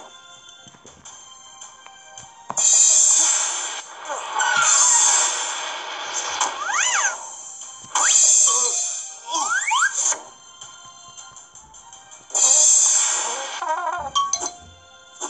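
Cartoon storm sound effects from an animated storybook page: loud gusts of wind-and-rain hiss about every five seconds, with rising whistles, over soft background music.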